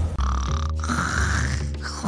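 A person snoring, over background music.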